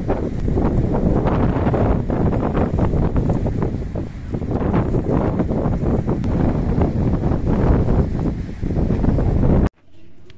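Strong wind buffeting the microphone in gusts, a heavy low rumble that cuts off abruptly near the end.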